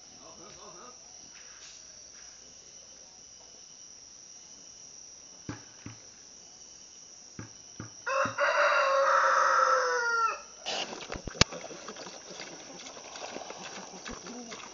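A rooster crowing once, a long, loud call of about two and a half seconds that ends in a falling note. A few sharp clicks follow it.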